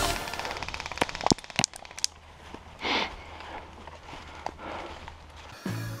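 Airsoft guns firing outdoors: a quick run of rapid clicks, then three or four sharp cracks between one and two seconds in, with a short rushing burst about three seconds in. Background music fades out at the start.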